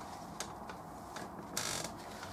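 A few light clicks, then near the end a short dry rub as a paper towel wipes wet oil paint across the canvas.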